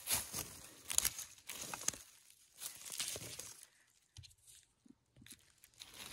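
Dry pine needles, twigs and forest litter crackling and rustling as a gloved hand works through them around sheep polypore mushrooms. The crackles come in short clusters and stop a little under four seconds in.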